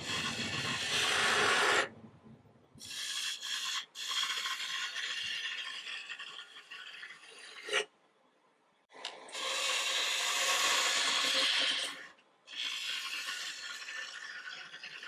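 A turning gouge cutting green, spalted aspen spinning on a wood lathe. The cutting runs in several passes broken by short pauses, the longest lasting about a second around the middle, with a sharp click just before it.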